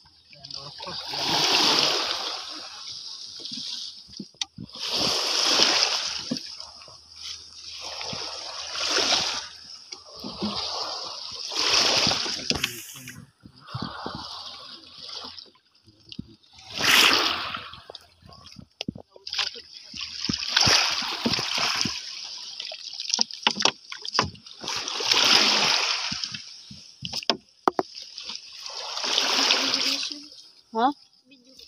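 Repeated splashing and sloshing of shallow water, a noisy surge every three to four seconds, as a person wades and works a fishing net by hand.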